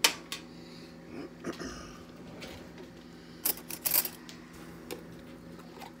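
Sharp metallic clicks and clinks of a tin can of condensed soup and a metal spoon being handled: a loud click at the start, another just after, and a cluster of louder clicks about three and a half to four seconds in.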